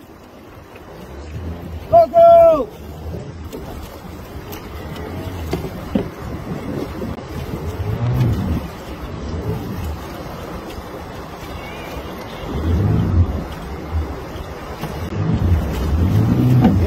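Tractor engine running as the machine pushes through deep floodwater, with water sloshing and splashing and wind on the microphone, swelling louder several times. A brief high falling call about two seconds in.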